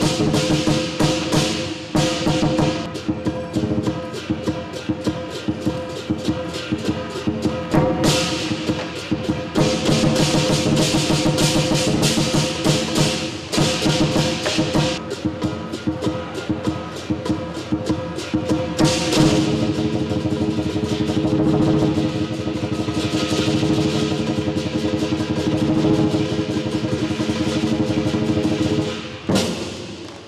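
Southern Chinese lion dance percussion: a large lion dance drum beaten in fast, dense strokes with cymbals and a gong ringing on underneath. The playing runs without a break, with a few brighter crashes, and falls away just before the end.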